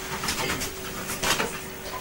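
Audience applause: a spread of irregular hand claps in a small theatre, thickening in a couple of brief clusters, ending in an abrupt cut.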